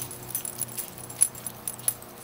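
A small dog's collar tags jingling in a few short metallic clinks as he wriggles on the grass, the loudest just past the middle.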